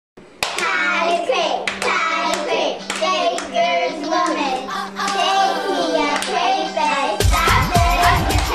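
Girls singing a hand-clapping rhyme, with sharp hand claps keeping an even beat of a little under two a second. Near the end, music with a heavy bass comes in over it.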